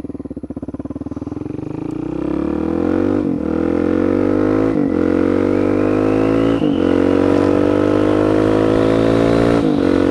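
Suzuki DR-Z400SM's single-cylinder four-stroke engine accelerating hard from low revs, its pitch climbing through the gears with four quick upshifts, each a brief dip before the revs rise again.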